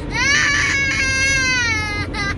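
A child giving one long, high-pitched whining wail that rises at the start and slowly falls away, over the low rumble of the car's interior.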